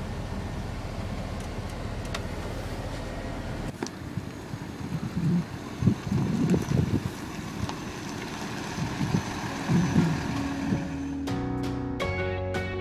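A steady low hum of the bus's Cummins six-cylinder diesel engine running. After a cut, irregular gusts of wind buffet the microphone outdoors. Near the end a short music sting of mallet notes begins.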